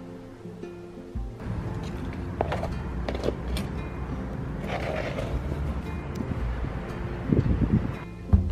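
Background guitar music; about a second in, a loud, even rumbling noise with scattered knocks joins it and lasts until near the end.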